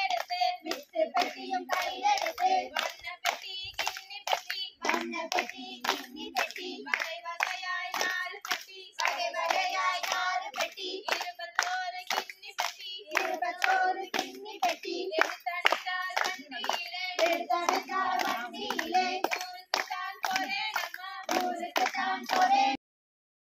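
Group of women singing a folk song together while clapping their hands in a steady rhythm, as in a Tamil kummi circle dance.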